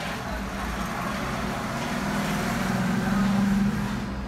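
Electric hair trimmer buzzing close up, growing louder, then dropping suddenly shortly before the end.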